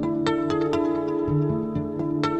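Background music: gently plucked, ringing notes, several a second, over steady sustained tones.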